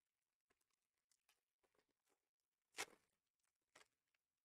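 Trading-card pack being opened by hand: a brief tearing rustle about three seconds in and a softer one just before the end, otherwise near silence.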